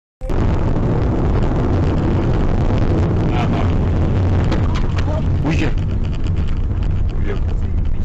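Loud, steady rumble of road and engine noise inside a moving car, with a few short voice sounds around the middle.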